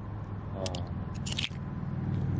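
Oyster shells and small stones clicking and crunching against each other as a hand rummages among them in shallow water, with a quick cluster of sharp clicks about a second in.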